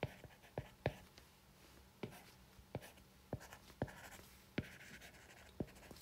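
A stylus writing on a tablet's glass screen: a string of irregular sharp taps as the nib touches down, with short scratching strokes between them.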